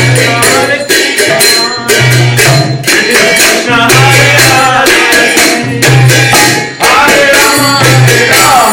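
Devotional kirtan: voices singing over a steady rhythm of jingling, clashing hand cymbals (karatalas), with a low tone recurring about every two seconds.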